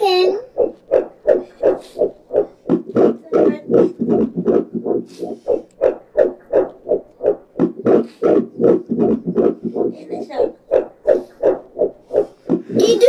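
Fetal heartbeat on a Doppler ultrasound, fast and regular at about two and a half beats a second, each beat a whooshing pulse.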